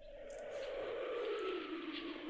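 Cartoon sound effect: a single whistling tone that falls slowly in pitch over a soft hiss, like wind across an empty landscape.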